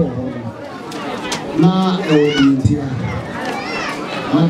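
A man speaking, with crowd chatter behind.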